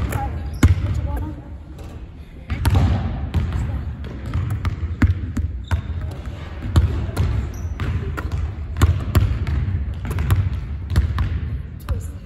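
Basketballs bouncing and being caught on a hardwood gym floor: many irregular thuds that echo through a large hall, with a brief lull about two seconds in.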